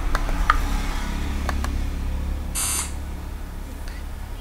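Mouse clicks and short electronic sound effects from an on-screen memory card game: a brief beep about half a second in and a short hissing buzz about two and a half seconds in, over a low steady hum.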